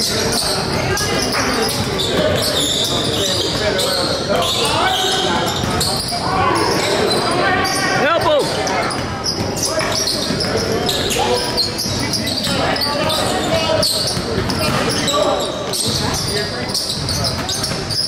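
Basketball dribbled on a hardwood gym floor during a game, the bounces echoing in the hall, with players' and spectators' voices throughout.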